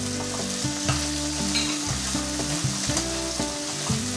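Broccoli florets stir-frying in hot oil in a nonstick pan: a steady sizzle with a spatula stirring and tossing the florets against the pan.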